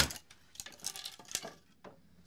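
Wood cracking and clicking as a froe splits a thin wooden shingle off a block: a quick series of light cracks, then one sharp crack near the end.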